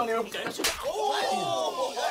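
A single sharp open-hand slap to the face during slap boxing, about two-thirds of a second in, followed by men's voices calling out in rising and falling pitch.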